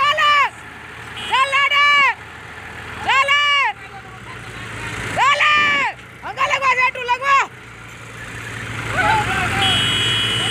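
Men shouting a string of loud, drawn-out calls, several in quick succession, over diesel tractor and excavator engines running. The engine noise grows louder near the end.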